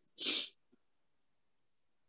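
A short breathy hiss from a person's voice, like an exhale or the hissed end of a word, lasting about a third of a second just after the start, then silence.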